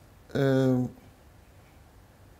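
A man's voice making one short, drawn-out hesitation sound at a steady, slightly falling pitch about a third of a second in. After that there is quiet room tone.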